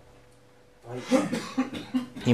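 After a short pause, a man coughs and clears his throat about a second in.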